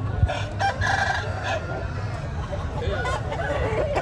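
A rooster crowing once, starting about a quarter second in and lasting about a second and a half.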